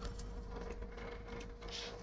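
Faint steady hum with a thin, even tone and low background hiss: room tone in a pause between spoken sentences.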